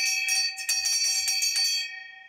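A brass pub bell rung rapidly, about six strikes a second, calling last orders. The strikes stop near the end and the ringing tone fades out.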